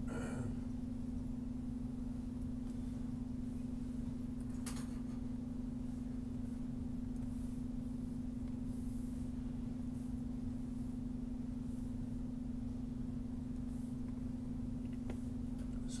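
Steady low electrical hum over faint background noise, with a faint click about five seconds in.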